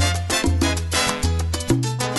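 Salsa music: a bass line in short held notes that change pitch about every half second, under steady percussion strokes.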